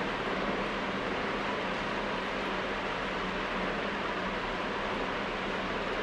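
Steady, even hiss of room background noise with a faint low hum underneath, unchanging throughout.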